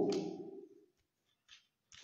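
Playing cards being handled and laid on a tabletop: a few faint clicks and a brief soft slide, after a man's spoken word dies away in the first half-second.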